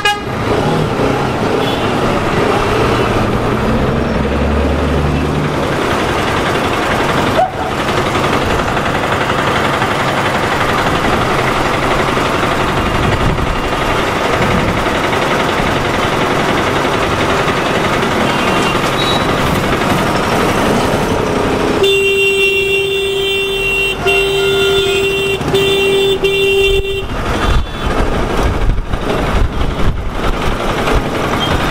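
Motorcycle ride through slow town traffic: a steady rush of engine and road noise, then about two-thirds of the way in a vehicle horn sounds one steady tone for about five seconds, with a brief break partway.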